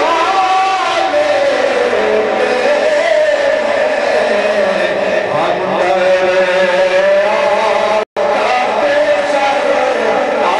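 A man's voice chanting a naat in long held, wavering notes that slide up and down, without spoken words. The sound cuts out for an instant about eight seconds in.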